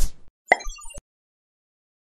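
Short logo sound effect for an animated title card: a quick pop right at the start, then a brief sparkly chime about half a second in that cuts off suddenly after about a second.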